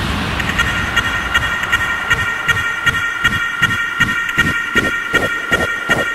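Hardstyle dance music in a breakdown: a high, siren-like synth tone pulses rapidly over a fading noise sweep. A low bass pulse builds in underneath and grows stronger toward the end.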